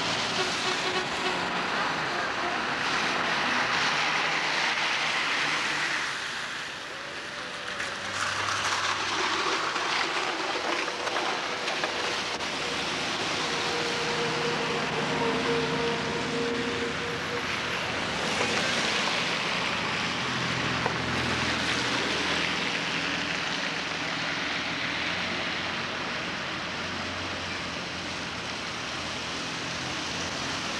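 Cars driving past on a wet, slushy street: tyre hiss on the wet road swells and fades as each car goes by, over low engine sound.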